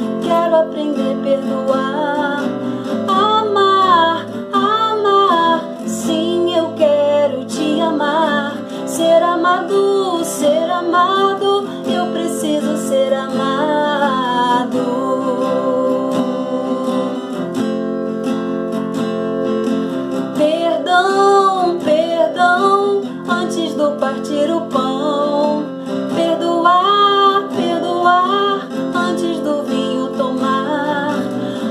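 A woman singing a Portuguese worship song about forgiveness, accompanied by a strummed acoustic guitar.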